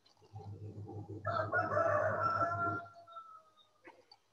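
A rooster crowing: one long call of about two seconds that trails off at the end, heard through a video-call participant's microphone over a low buzzing hum.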